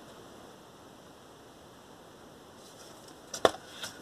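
Quiet room tone, then cardboard LP record sleeves being handled and set down near the end, with one sharp tap about three and a half seconds in.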